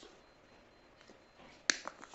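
A small hand stripping tool clicking shut on the thin wires of a telephone cable as it strips their insulation: one sharp click near the end, followed by a fainter one.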